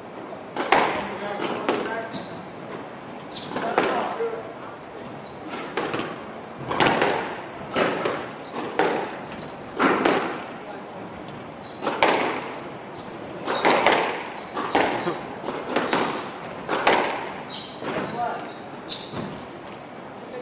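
A squash rally: the ball is struck by the rackets and cracks off the court walls every second or so, with short high squeaks of shoes on the hardwood floor between the shots.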